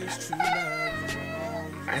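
A man's drawn-out laugh, one long voiced sound that slides slowly down in pitch, over background music.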